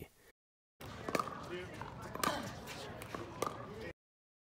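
Pickleball play: paddles striking the hollow plastic ball in sharp pops, three of them about a second apart, starting about a second in, over outdoor court noise with voices in the background.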